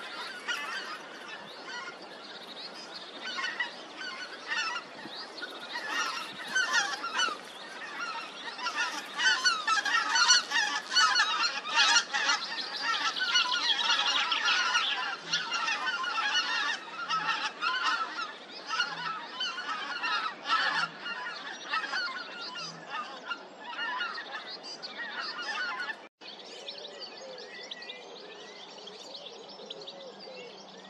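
A large flock of geese honking continuously as it flies over, the many overlapping calls building to a peak about halfway through and then thinning. After a sudden cut near the end, only quieter, scattered bird calls remain.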